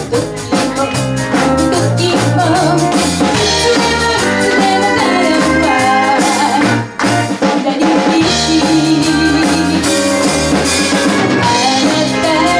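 A live pop band playing: a woman singing over electric guitar, bass, keyboards and a drum kit, with a brief break in the band about seven seconds in.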